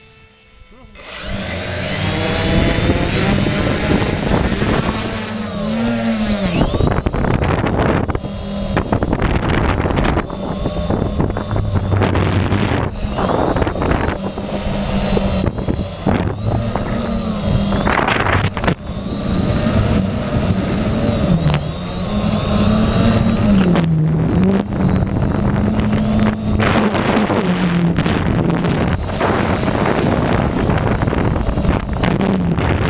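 An octocopter's eight motors and propellers buzzing, heard from a camera on its frame, starting about a second in. The pitch wavers up and down as the throttle changes, with wind noise on the microphone.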